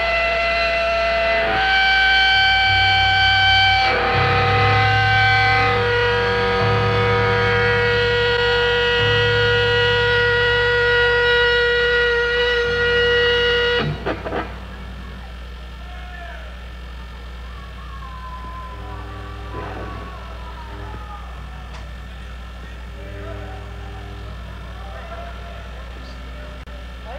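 Live electric guitar letting chords ring out through the amplifier with effects, each held for a couple of seconds, stopping sharply about halfway through. After that only a steady amplifier hum and faint voices remain.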